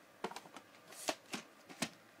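VHS cassettes being handled, a string of short plastic clicks and rustles as a tape is picked up and moved.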